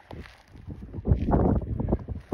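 Wind buffeting the microphone, with a louder rough rush lasting most of a second, starting about a second in.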